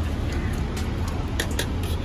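Knife chopping on a wooden cutting board, several sharp irregular taps over a steady low rumble.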